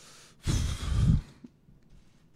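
A man's heavy sigh into a close podium microphone, one breathy exhale with a low voiced edge starting about half a second in and lasting under a second, as he pauses choked up with emotion.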